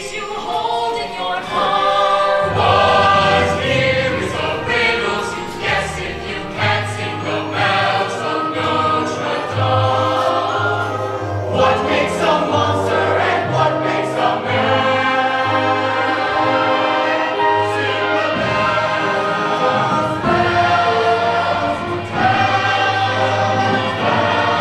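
Full cast of a stage musical singing together as a choir over instrumental accompaniment, with long held notes and a steady low bass throughout.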